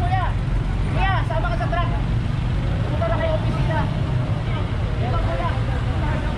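A diesel dump truck's engine running with a steady low rumble as the truck pulls slowly away up the street, with people talking nearby in short bursts.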